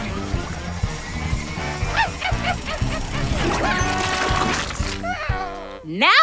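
Cartoon background music with a steady beat and a rising whoosh as the paint mixer starts swirling, with short high yipping calls from a cartoon creature.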